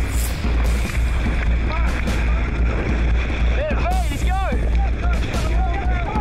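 Heavy surf washing and breaking around a camera at water level, with a strong low rumble of wind and water on the microphone. Men shout a few times, most clearly around four seconds in.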